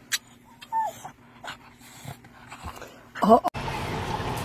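A dog whimpering in short, high, falling whines among small clicks and scuffs, then a louder, wavering cry a little over three seconds in. The sound cuts off abruptly and a steady hiss takes over for the last half second.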